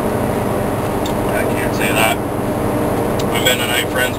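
Steady engine and road drone heard from inside a semi-truck cab while it drives along, with a few brief bits of a man's voice.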